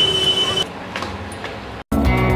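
Noisy street and crowd bustle around a vehicle, with a steady tone for about the first half-second and a few clicks. It cuts off abruptly to a moment of silence near the end.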